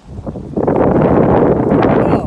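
Wind buffeting the phone's microphone: a loud, steady rushing noise that starts about half a second in.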